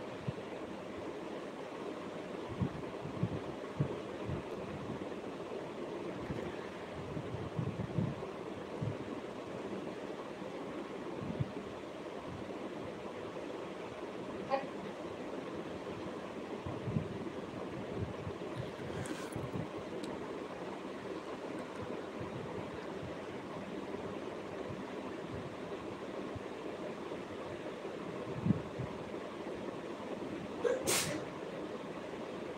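A steady rushing background noise, with scattered soft low knocks every few seconds and two brief high ticks around the middle.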